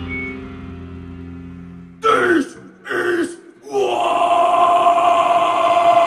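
A distorted electric-guitar chord rings out and fades. About two seconds in, a metal vocalist gives two short growled shouts, each falling in pitch. Just before four seconds he starts a long, loud held growl.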